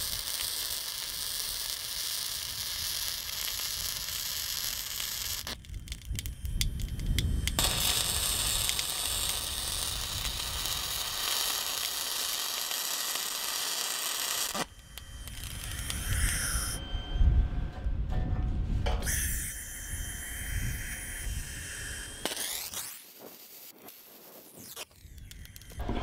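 Gas-shielded MIG welder laying short beads on the mild steel hinge cheeks, a steady crackling hiss, with a brief stop about six seconds in. The welds are kept short so the plate doesn't warp and jam the hinge pin. In the second half the sound changes to a more uneven mix with a few steady tones.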